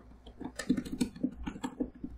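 Two metal spatulas chopping on the steel cold plate of a rolled ice cream machine, rapid clacking strikes about four or five a second as crushed Sun Chips are mashed into the freezing ice cream base.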